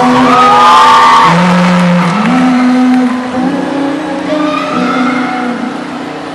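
Live rock band with violin playing sustained, held notes over a low bass line; a high note slides up about a second in, and the band gets quieter after about three seconds.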